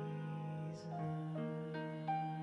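Soft piano and keyboard music: gentle sustained chords over a low held note, with new notes entering about a second in.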